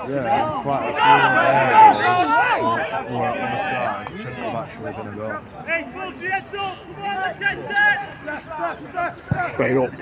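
Men's voices shouting and calling to one another across a football pitch during play, loudest in the first few seconds.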